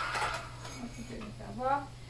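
Curtain fabric rustling as the curtain is lifted down from its rod, fading out about half a second in. A few faint spoken syllables come near the end.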